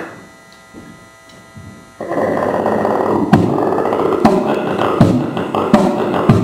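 Beatboxing through a microphone and PA: after a sudden break of about two seconds with only a faint hum, the beatboxer comes back in about two seconds in with a droning hum under sharp kick-like beats roughly once a second.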